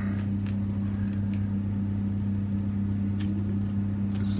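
A steady low electrical hum, with a few faint small clicks and crackles of a quail eggshell being cracked open and picked apart by fingers.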